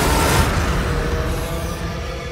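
Trailer sound design: a loud, dense wash of noise stops about half a second in. A held musical drone with steady tones rings on under it and slowly fades.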